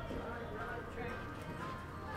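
Hoofbeats of a horse loping on the soft dirt of an arena, with faint voices in the background.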